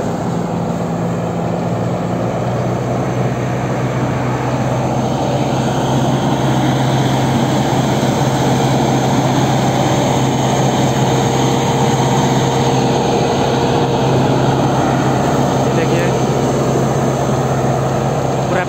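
Engine-driven pesticide sprayer running steadily while spraying date palm fruit bunches: a constant engine hum under the hiss of the spray.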